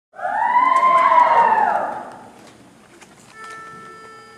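Audience whooping and cheering in high voices, several overlapping calls gliding up and down, fading after about two seconds. A steady single held note starts about three and a half seconds in.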